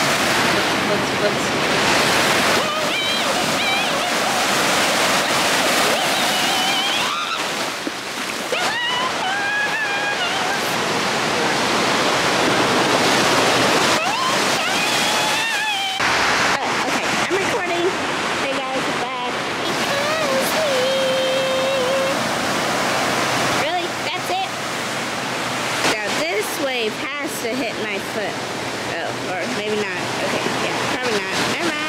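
Ocean surf breaking and washing up the sand in a steady, loud rush, with voices of other people in the background.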